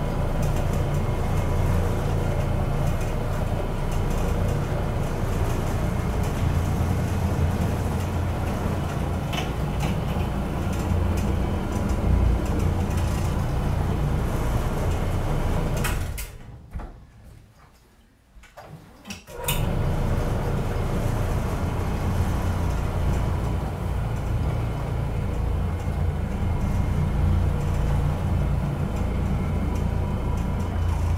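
Challenger OP orbital floor machine running steadily, its motor giving a low hum as it scrubs carpet with a microfiber bonnet. The sound cuts out for about three seconds a little past halfway, then comes back.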